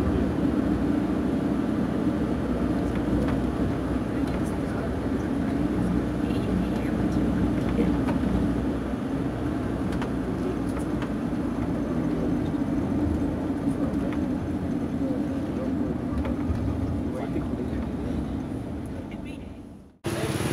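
Tour minibus engine and road noise heard from inside the cabin while driving, a steady rumble that fades out at the very end.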